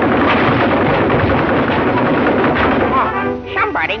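Cartoon pistol fire: a rapid, unbroken volley of shots over music, stopping about three seconds in.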